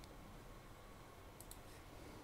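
Near silence with faint clicks: one at the start and two quick clicks about one and a half seconds in.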